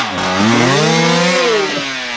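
Enduro dirt bike engine revving hard on a steep hill climb. The revs dip for a moment at the start, climb and hold, then fall away near the end as the climb fails and the bike tips over.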